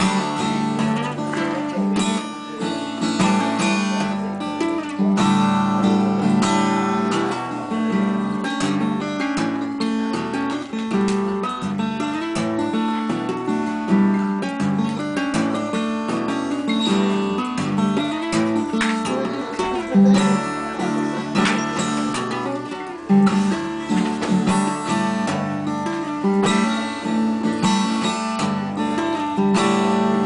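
Solo steel-string acoustic guitar played fingerstyle with two-handed tapping on the fretboard. Notes ring over one another, with frequent sharp attacks.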